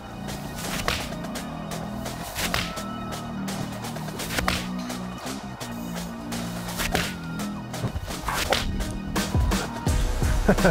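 Background music under about five sharp, irregularly spaced golf iron strikes on balls off a range mat, from Ben Sayers M8 irons.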